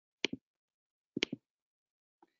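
Two short clicks about a second apart, each a quick double tick, from a computer's mouse or keys as a presentation slide is advanced; dead silence between them.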